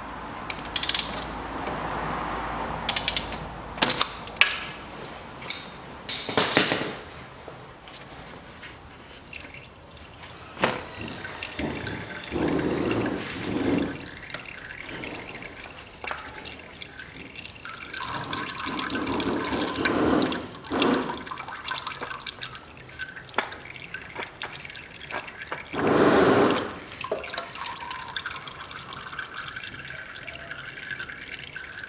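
Oil filter being unscrewed with a crab-type oil-filter wrench: sharp metal clicks and knocks in the first several seconds. Later, engine oil runs and drips from the loosened filter into a basin in several short spells.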